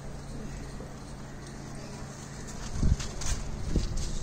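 Sponge-gourd vines and leaves handled and pulled by hand: faint rustling, then two dull thumps a second apart near the end.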